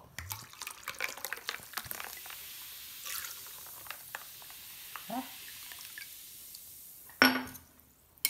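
Tonic water poured from a glass bottle into a martini glass over ice, fizzing and trickling with many small pops. A single knock near the end.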